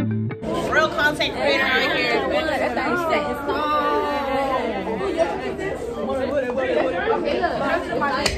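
Many teenagers chattering and calling out over one another in a crowded classroom. A short guitar phrase cuts off about half a second in, just as the voices begin.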